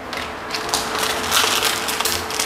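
A thin plastic bag of curry powder being crinkled and torn open by hand, a dry crackling rustle with a few sharp crackles that builds through the second half.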